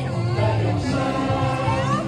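A group of voices singing together over accompanying music with a steady beat.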